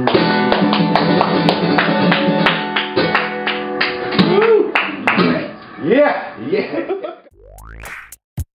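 Ovation Super Adamas acoustic guitar strummed and picked through the closing bars of a song, the last chords ringing out about halfway through. Near the end a rising electronic sweep starts.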